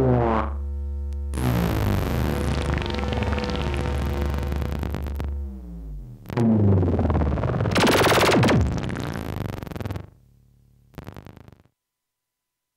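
Eurorack modular synthesizer (Erica Synths Pico System III) playing a mono experimental drone: buzzing tones sweeping and shifting in pitch as the knobs are turned, over a steady low hum. A loud burst of noise comes about eight seconds in. Near the end the sound drops away, returns briefly and cuts off.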